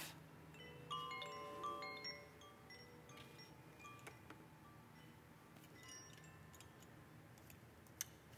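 Hand-held tubular wind chimes sounding: several ringing tones start about a second in and fade away over the next two seconds, leaving a faint ring.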